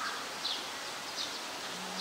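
Outdoor background noise with a small bird chirping repeatedly: short, high, slightly falling chirps about every half second.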